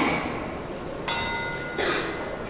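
A bell is struck once about a second in and rings briefly with a clear, steady tone. It is followed near the end by a short sharp knock.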